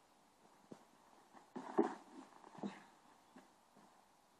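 Faint, scattered short knocks and scuffs from two men sparring with swords and shields in helmets and mail. The loudest cluster comes just under two seconds in, with a smaller one a little later.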